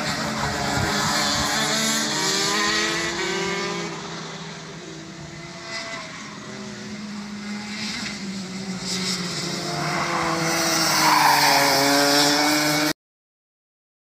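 Two-stroke racing kart engines heard from trackside, their pitch rising and falling as the karts accelerate out of corners and back off. The sound fades and then grows louder as a kart comes closer, and cuts off suddenly about a second before the end.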